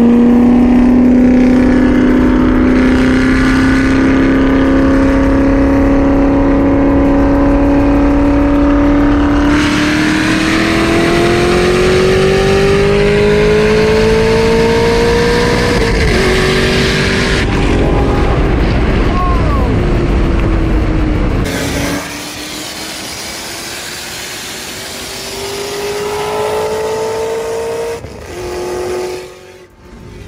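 Supercharged V8 sports cars at full throttle in a highway roll race: long engine pulls that climb steadily in pitch through each gear, with an upshift drop about two-thirds of the way through. After that the sound is quieter and muffled, heard from inside a car's cabin, and climbs again to another shift near the end.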